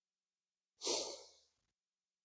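A single breath out by a man smoking a pipe: it starts sharply about a second in and fades away in under a second.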